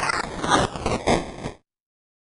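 Electronic DJ mix played on a Numark iDJ Pro controller, the bass dropped out as a sweeping effect slides downward in pitch, then the sound cuts off suddenly about one and a half seconds in.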